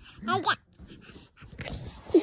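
A toddler's short, high laugh, one brief vocal burst with the pitch bending up and down about a quarter of a second in, followed by faint sounds.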